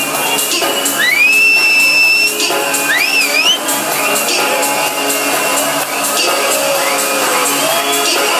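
Electronic dance music playing loud over a club sound system, with a steady beat. A high tone sweeps up and holds about a second in, and another wavers up and down about three seconds in.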